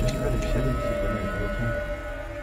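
Music: a long held note with a second steady tone above it, while the backing grows quieter.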